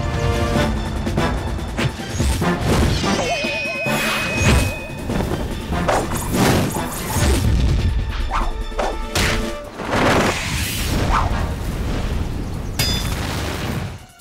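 Fight-scene soundtrack: background music with repeated dubbed hits, crashes and whooshes of a martial-arts fight.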